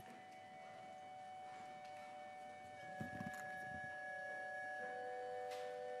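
Organ playing soft, sustained chords, growing slightly louder, with new held notes coming in about three seconds and five seconds in. A faint knock sounds about halfway through.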